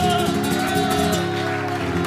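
A man singing the final held note of an operatic song with vibrato over instrumental accompaniment. The voice ends about a second in and the accompaniment's chord rings on.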